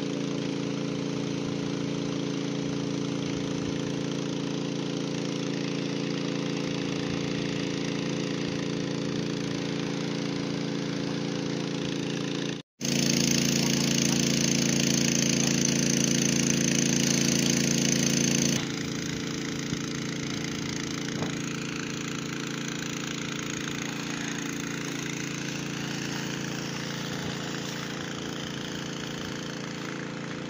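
An engine runs steadily under the hiss of a fire hose jet spraying onto smouldering garbage. After a brief break about a third of the way in, a louder, hissier stretch lasts about six seconds, then the sound settles back to its earlier level.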